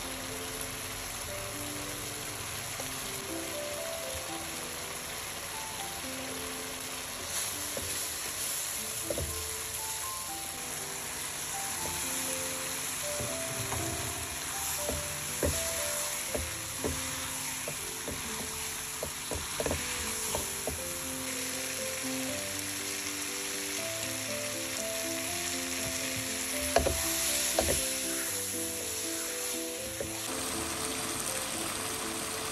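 Chili paste sizzling in a stone-coated wok while a silicone spatula stirs and scrapes it, with scattered knocks of the spatula against the pan, the loudest near the end. Soft background music with a melody plays throughout.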